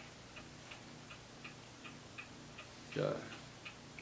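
A clock ticking steadily and faintly, a little under three ticks a second, over a faint low hum; a man's brief 'uh' comes near the end.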